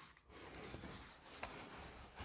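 Whiteboard duster rubbing across a whiteboard, erasing marker writing: a faint, continuous scrubbing that starts about a third of a second in.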